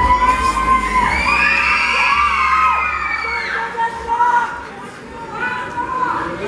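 Crowd of fans screaming and cheering in high-pitched, overlapping shrieks, loudest in the first few seconds and dying down about five seconds in.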